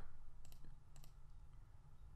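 Computer mouse clicking faintly, two short clicks about half a second apart, as the File tab is clicked open.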